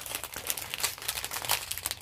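Small zip-lock plastic bags of diamond-painting drills crinkling as they are handled and turned over, a run of soft, irregular crackles.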